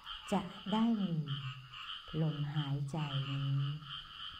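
A chorus of frogs calling: a high, pulsing trill that runs on without a break under a woman's slow, calm speech.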